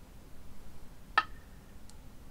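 A Go stone set down on a wooden Go board: one sharp clack with a short ring a little over a second in, followed by a much fainter tick near the end.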